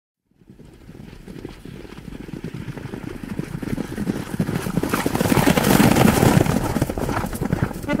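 Galloping horse hooves, a rapid drumming that builds from nothing to loud over several seconds, with a rushing noise mixed in.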